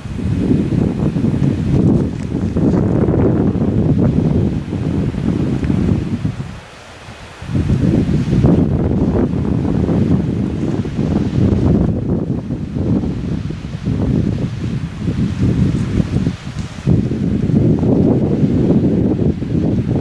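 Mountain wind buffeting the microphone in gusts, with a brief lull about seven seconds in.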